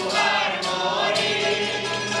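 Group of voices singing a habanera in chorus, accompanied by strummed guitars and bandurrias in a steady rhythm.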